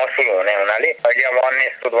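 Only speech: a person talking continuously, with the narrow sound of a radio broadcast recording.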